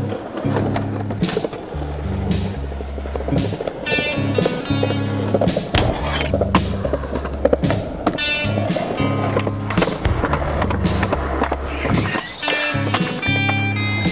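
Skateboard wheels rolling on concrete, with several sharp clacks of the board from tricks and landings, over music with a stepping bass line.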